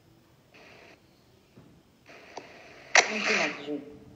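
A woman's voice coming through a video call, breaking up into bursts of hiss and then a louder, distorted, unintelligible stretch near the end: the connection is too poor for the words to be understood.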